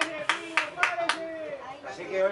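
A person clapping their hands, four sharp claps in quick succession in the first second or so.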